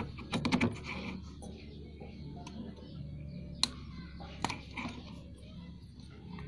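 A few sharp clicks and rattles as hands handle the crank position sensor wiring on a scooter engine: a quick cluster in the first second, then two single clicks later on, over a faint steady background.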